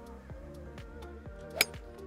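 A golf club striking the ball once in a full swing, a single sharp crack about one and a half seconds in, a clean contact that sounded really nice. Background music with a steady beat plays underneath.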